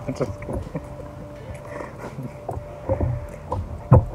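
Canadian coins clinking and a small wallet being handled as the coins are dug out, a series of small irregular clicks and knocks over wind rumbling on the microphone. A sharp, louder knock comes just before the end.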